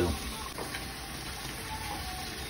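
Steady sizzling from a large cooking pot in which chopped tomato, onion and garlic are sautéing around a beef pot roast, the pan nearly dry.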